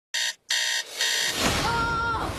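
Electronic alarm clock beeping in short, loud bursts with about three beeps in the first second, then a swell of fuller sound near the end.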